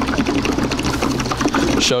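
Diesel exhaust fluid pouring from a jug through a flexible plastic spout into a truck's DEF tank, with fast, steady gurgling as air gurgles out while the tank fills.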